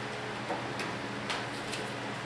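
Room tone in a pause: a steady low hum with a few faint, short clicks, two of them a little more distinct about half a second and just over a second in.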